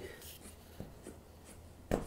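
Faint rubbing and rustling of fingers pressing black gaff tape up against the edge of a foam core board, with a few soft ticks and a sharper tap near the end.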